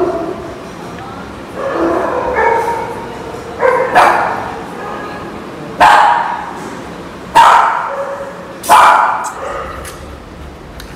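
Small terrier-type dog barking: five sharp barks spaced a second or more apart, starting about three and a half seconds in, after some softer yips.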